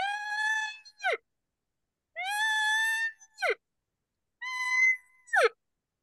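Three short, high-pitched tones blown on a latex diaphragm (mouth reed) elk call, each held steady and then breaking sharply downward in pitch at its end, the last a little higher than the others. It is the basic practice tone made by hissing air across the reed, not yet shaped into an elk-like call.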